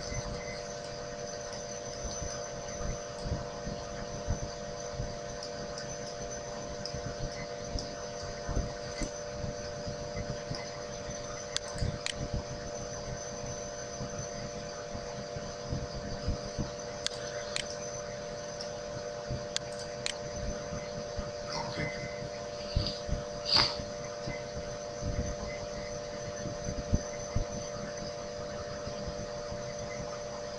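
A steady background hum made of several constant tones, with a few faint, scattered clicks; the loudest click comes about three-quarters of the way through.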